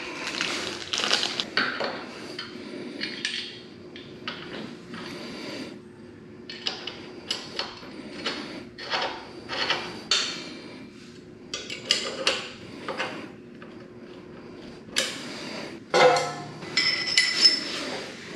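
Hand tools on a motorcycle footpeg mount: an Allen key and a metal bar clinking and tapping against the steel bolts and aluminium peg bracket, in irregular short knocks, with a louder cluster near the end.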